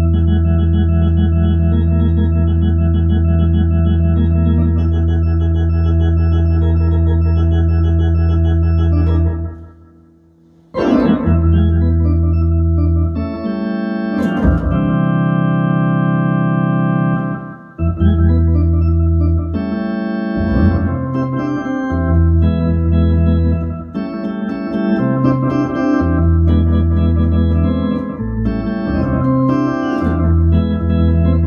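Ballpark-style organ playing a long held chord, cutting out briefly about ten seconds in, then moving through chords that change every second or two.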